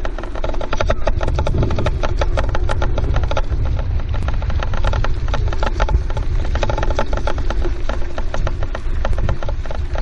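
Gravel crunching steadily as the dog team and its rig travel over a gravel road, a dense run of small clicks over a low rumble of wind on the microphone.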